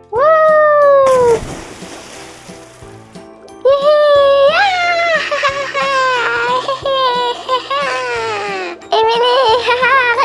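A falling whistle-like tone, then about two seconds of splashing as a plush toy dog lands in a foam-filled paddling pool. A wavering, high-pitched melody follows and runs for about five seconds.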